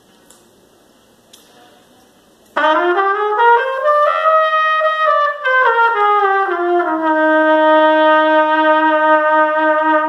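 A 1955 Conn 22B Victor trumpet, played with a Jet-Tone Symphony Model C mouthpiece, comes in suddenly about two and a half seconds in. It plays a scale, stepping up and then back down, and ends on one long held note.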